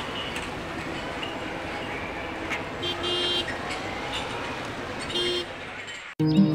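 Steady street traffic noise with two short car horn toots, the first about three seconds in and the second near the end.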